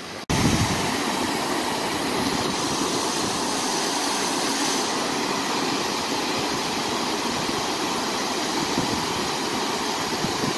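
Steady rush of a shallow creek running over a stony bed, starting abruptly after a short break just after the start.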